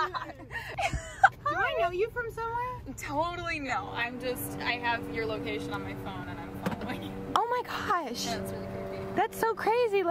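Women's voices talking, too indistinct for the speech recogniser, with a steady low hum joining in about four seconds in.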